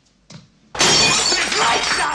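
A sudden, loud crash of something breaking and shattering, like glass or crockery, about three-quarters of a second in, from a film soundtrack. A man's shouting voice starts over the tail of the crash.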